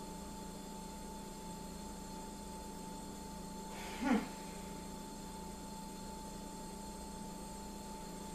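Steady room hum with a faint higher tone over it, and one short spoken word about four seconds in.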